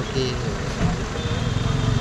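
Quiet talking voices over a steady low hum.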